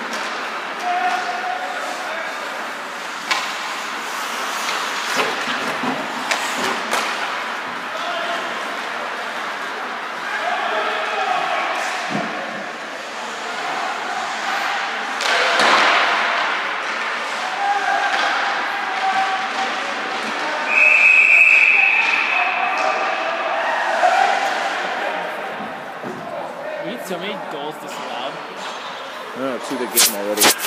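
Ice hockey play in an indoor rink: puck and sticks knocking and thudding against the boards, with players' voices calling out. A referee's whistle is blown once for about two seconds a little past the middle, the loudest sound in the stretch.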